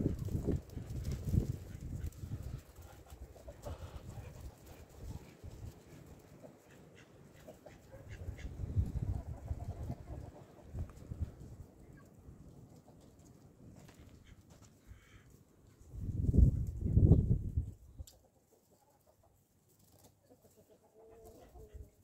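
Farmyard chickens clucking quietly, mixed with low rumbling bursts, the loudest about sixteen seconds in, after which it goes much quieter.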